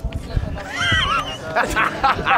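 A man laughing: a high-pitched, wavering giggle about halfway through, then a run of short laughs near the end.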